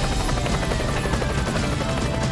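Opening theme of a TV news programme: music laid over a helicopter rotor sound effect, with a tone sliding slowly downward.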